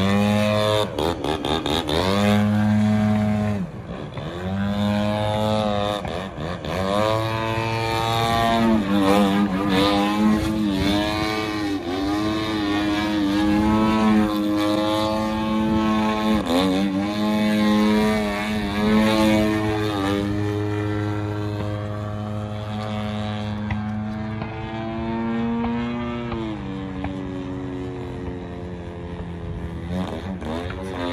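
Propeller engine of an aerobatic RC model plane in flight, revving up and down over and over as the throttle is worked through the manoeuvres, its pitch swooping down and back up every few seconds. It holds steadier for a while in the second half, then drops in pitch near the end.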